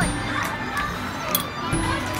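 Carousel music playing, with steady held notes, while a voice speaks briefly at the start.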